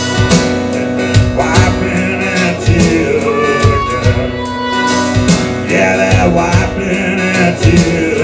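Live instrumental passage: acoustic guitar strummed and a harmonica playing held, bending notes over a drum machine's steady beat.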